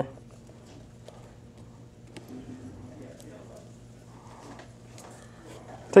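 Faint scattered clicks and a soft rustle of fingers working at a cardboard deck box, feeling for its clasp, over a low steady hum.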